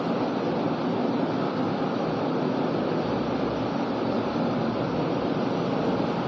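Steady, even room hiss with no distinct events, the background noise of a small classroom recording.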